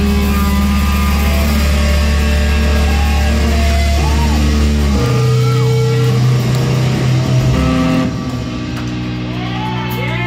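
Live rock band playing: electric guitar, bass guitar and drum kit, with long held low notes that change every few seconds. About eight seconds in the upper range thins out and the held guitar and bass notes ring on.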